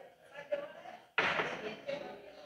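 Faint, indistinct voices in a large church, with a sudden louder noise just over a second in that fades away.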